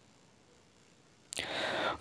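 Near silence, then about a second and a half in, the narrator's soft breath in through the mouth just before he speaks again.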